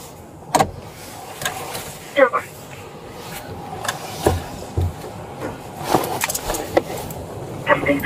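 Steady low road and engine rumble inside a moving patrol car, with a few short sharp clicks and knocks scattered through it.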